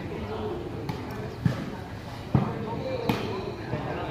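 Volleyball struck by players' hands during a rally: three sharp slaps roughly a second apart, the middle one loudest, over the voices of onlookers.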